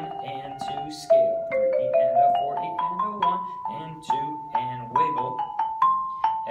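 Marimba played with yarn mallets: a melodic line of single struck notes, each ringing briefly, with a rising scale run in the middle followed by notes moving around one higher pitch.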